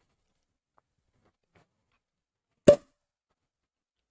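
A champagne cork popping out of a bottle of Veuve Clicquot Rosé: one short, sharp pop about two and a half seconds in.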